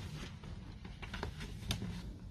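A sheet of paper being handled and laid on a table under a piece of fabric: faint rustling with a few brief, sharp taps in the second half.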